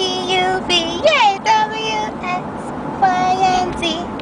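A toddler's singsong vocalizing: a string of high held notes and one sliding squeal about a second in, over low car-ride noise.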